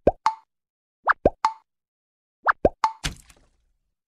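Cartoon pop sound effects: three quick sets of bloops, each a rising then falling swoop followed by a short pop, spaced a little over a second apart. A short noisy splat comes about three seconds in.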